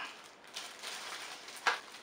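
Clear plastic packaging crinkling and rustling as it is handled and unfolded, with one sharp tap near the end.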